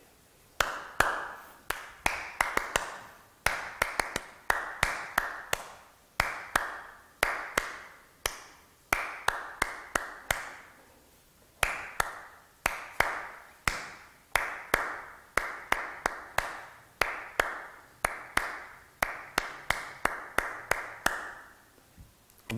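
One person's hand claps beating out the rhythm of a song, in phrases of quick and slower claps with short pauses between them, each clap ringing briefly in the room. The rhythm is clapped without melody so that listeners can recognise the song.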